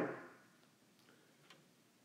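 A man's voice trailing off, then near silence: room tone with a couple of faint ticks about a second in.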